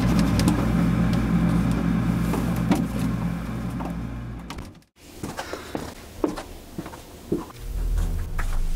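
A steady low hum for about the first five seconds, which cuts off abruptly. Then light clicks and knocks as a refrigerator is opened and a container is taken out.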